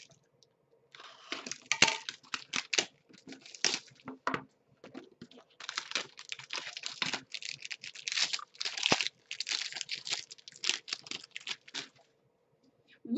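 An Upper Deck Engrained hockey card box being unwrapped and opened by hand: a dense run of quick tearing, crinkling and rustling of wrapping and cardboard, starting about a second in.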